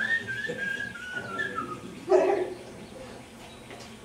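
A man whistling a wavering note that slides and steps downward in pitch for almost two seconds, mimicking a dove speeding past a car. A short loud burst follows about two seconds in.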